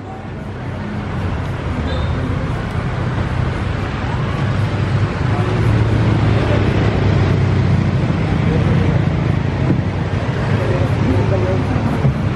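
Street traffic: a motor vehicle's engine rumbling, growing louder over the first few seconds and then holding steady, with faint voices.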